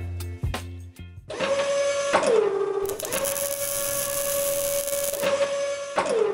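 The end of background music gives way to a steady mechanical whine, a motor-like sound effect with a logo sting. It drops in pitch about two seconds in, picks up again with a hiss laid over it for a couple of seconds, and starts to drop again near the end.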